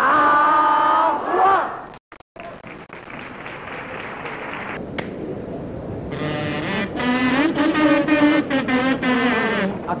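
A held shout from the performers, then a theatre audience laughing and applauding, with a wavering pitched sound over the crowd noise in the last few seconds.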